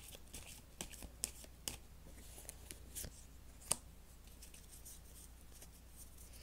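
Tarot cards handled by hand: a string of light snaps and clicks as the deck is shuffled and a card drawn and laid on the cloth, the sharpest snap a little past halfway, with fewer sounds near the end.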